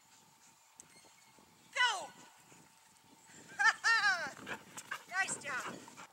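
A dog barking in short, high yelps: one falling bark about two seconds in, a quick run of barks around four seconds, and a few more near the end.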